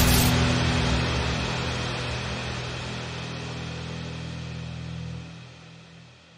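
End of a film-trailer music cue: a loud hit at the start, then a low held drone that fades steadily and dies away about five seconds in.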